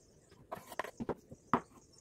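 Kitchen knife cutting hard-boiled egg on a bamboo cutting board: the blade knocks against the wood in short, sharp taps, two close together about a second in and another half a second later, after a brief rustle.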